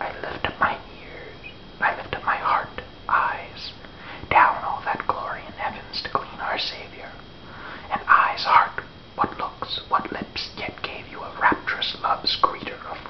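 A man whispering aloud in short phrases with brief pauses between them.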